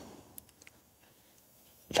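Near silence with a couple of faint, short ticks about half a second in.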